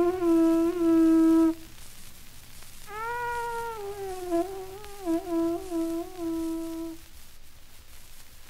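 Held tones from an ancient Mexican wind instrument on a 78 rpm record with faint surface hiss: one loud steady note that stops about a second and a half in, then after a pause a softer note that starts higher, slides down and wavers with short dips before ending about seven seconds in.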